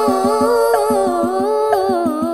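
A woman singing a long, ornamented sholawat line that bends up and down in pitch, over a steady pattern of Banjari frame-drum (rebana) strokes at about five a second.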